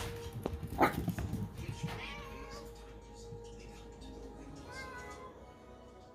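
Domestic cat meowing three times: the loudest call comes about a second in, followed by two shorter ones.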